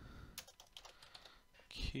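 Computer keyboard typing: several separate, faint keystrokes spelling out a word of code.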